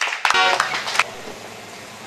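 Scattered applause from a small audience dying out within the first second, with a brief shout among the claps, then the hum of a quiet room.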